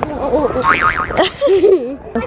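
Young children's voices talking and calling out, with a high, wavering call about a second in.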